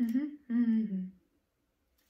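A woman humming with her lips closed: two short hummed phrases in the first second or so, the second sliding down in pitch.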